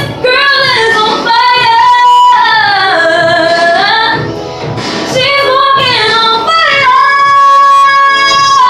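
A young girl singing unaccompanied in gliding vocal runs with held notes; the longest, a steady high note, comes near the end.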